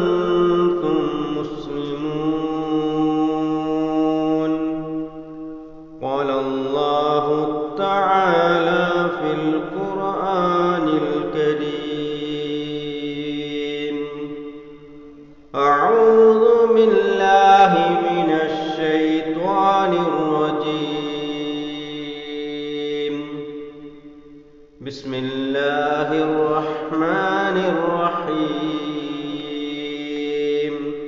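A man's voice reciting Quranic verses in Arabic in a slow, melodic chanting style: long held notes with gliding pitch, in long phrases broken by short pauses for breath about every nine seconds.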